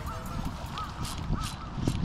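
A bird calling three times in short, arched notes, over a low rumble with a couple of bumps.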